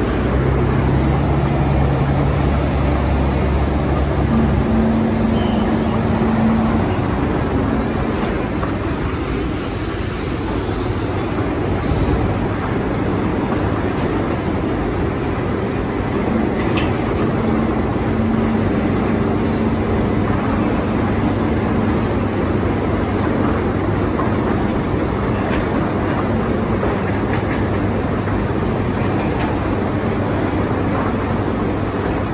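John Deere tractor's diesel engine running, heard from the driver's seat, with a deeper, stronger engine note for the first four seconds that then settles to a steady run.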